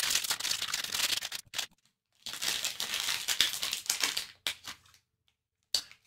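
Plastic blind-bag wrapper crinkling and tearing as it is pulled open by hand, in two long stretches of crackling with a short pause between.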